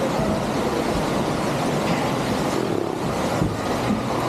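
Steady rushing din of an indoor waterpark, water running through the slides and pool noise echoing in the hall, heard from inside the slide tower.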